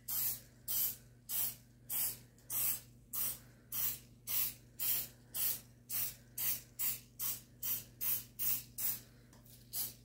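Aerosol cooking-oil spray can giving short, separate hissing squirts, about two a second, one into each cup of a metal mini muffin pan to grease it.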